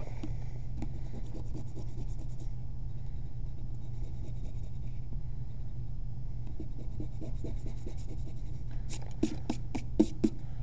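Pencil eraser rubbing on paper in runs of quick back-and-forth strokes, erasing perspective guide lines, with a few louder swipes on the paper near the end.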